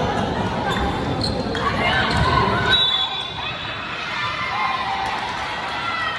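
Volleyball rally on an indoor court: ball strikes amid spectators' shouting and cheering. The noise drops about three seconds in, as the rally ends.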